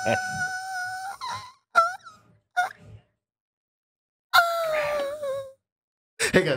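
The end of an intro song: a singing voice holds a note over the music, and both stop about a second in. Two short vocal yelps follow, then a pause, then a long wailing note that slides down in pitch near the end.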